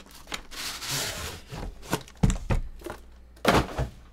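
Plastic shrink wrap rustling as it is pulled off an aluminium briefcase-style card case, then a few knocks and a louder thump near the end as the metal case is handled and set down on the table.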